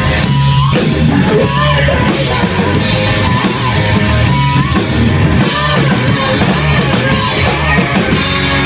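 Loud hard rock played live by a band: distorted electric guitar through a KSR Ares tube amp head, with a drum kit.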